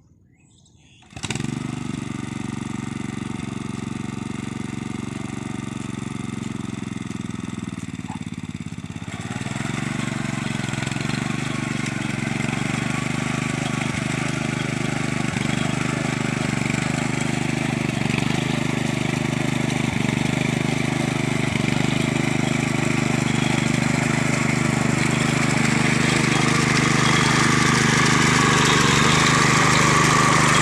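A walk-behind power tiller's engine runs steadily while the tiller churns through wet paddy mud. The sound starts suddenly about a second in, grows fuller about nine seconds in and gets gradually louder toward the end.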